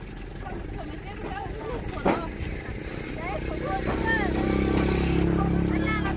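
Small pickup truck's engine idling, a steady low hum that grows louder from about halfway through, with a single sharp thump about two seconds in.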